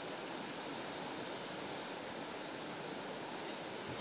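Steady hiss of ocean surf, an even wash with no single wave standing out.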